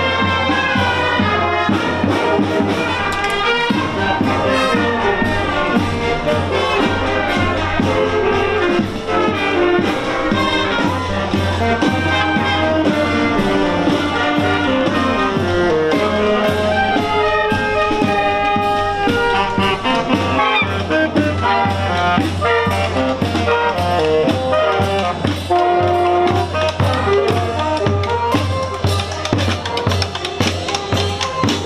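A children's marching band playing live while marching: trumpets, trombones, sousaphones and saxophones carry the tune over a steady beat.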